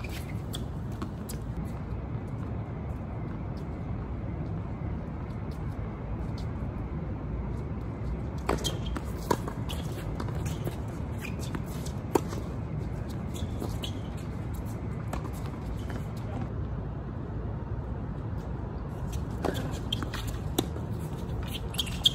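Tennis balls struck by rackets and bouncing on a hard court: a few sharp pops spaced seconds apart, over a steady low background rumble.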